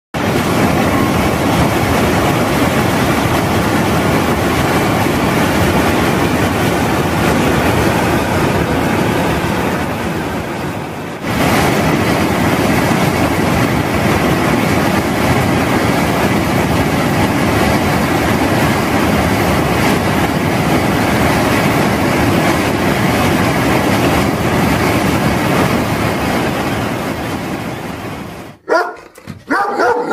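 Steady, loud rush of whitewater rapids, briefly dipping about a third of the way in. Near the end it cuts to a German Shepherd barking sharply a few times.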